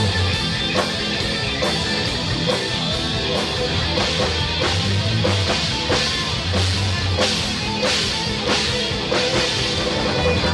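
Live rock band playing an instrumental passage without vocals: two electric guitars over a drum kit keeping a steady beat with cymbal hits.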